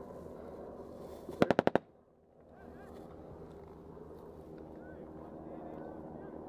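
A short burst of automatic gunfire about one and a half seconds in: five shots in about a third of a second, over a steady low hum.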